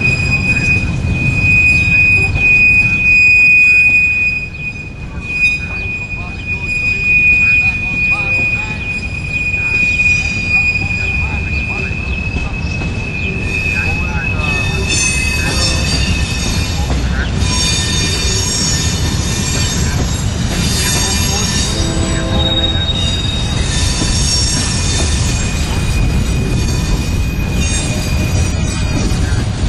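Freight cars rolling past with a steady low rumble of steel wheels on rail, and a held high wheel squeal through the first half. From about halfway on, the squealing turns choppier and higher-pitched, coming and going in several bursts.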